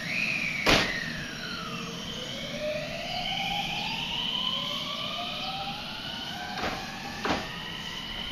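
JR West 223 series electric train accelerating away from a station: its inverter and traction motors whine in several tones that climb steadily in pitch as it gathers speed. A sharp clunk comes about a second in, and two more near the end.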